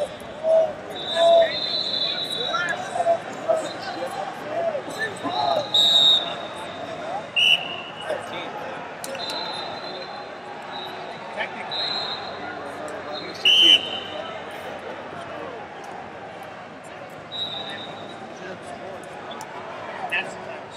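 Wrestling-arena ambience: referees' whistles blow short blasts several times from neighbouring mats over continuous crowd chatter and shouts.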